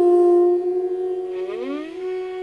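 Carnatic bamboo flute holding one long steady note that slowly fades. Near the end, a second instrument slides up in pitch to meet the same note.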